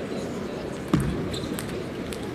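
Table tennis rally: sharp clicks of the ball off bats and table, with one heavier knock about a second in, over the murmur of voices in a large hall.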